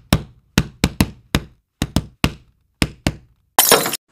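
Edited-in sound effect: a quick, uneven run of about ten sharp knocks with dead silence between them, ending near the end in a short noisy crash.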